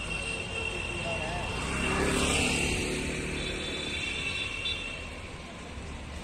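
A vehicle passing by, its noise swelling to a peak about two seconds in and fading away over the next few seconds.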